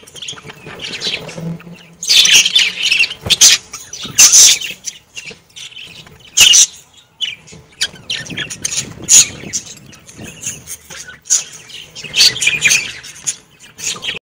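A flock of pet budgerigars chirping and chattering, high-pitched calls in irregular bursts with louder outbursts every few seconds.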